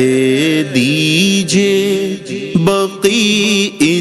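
A male voice singing an Urdu naat without instruments, holding long notes that bend in pitch, with short breaks between phrases.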